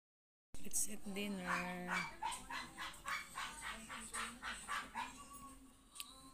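A dog barking in a quick, even run of short barks, about three a second, starting abruptly after half a second of silence.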